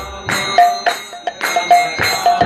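Mridangam played in a fast rhythm of sharp strokes, each ringing at a clear pitch from the tuned right head; the deep bass strokes of the left head stop for about a second in the middle. A steady high metallic ringing runs over the drumming.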